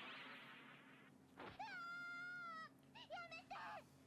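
Faint high-pitched cartoon voice from the anime episode playing in the background: one long drawn-out cry about a second and a half in, then a few short cries.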